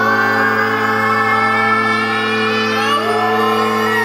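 Live band music: a steady low drone holds under several slowly gliding tones, one rising sharply about three seconds in, with a siren-like sound.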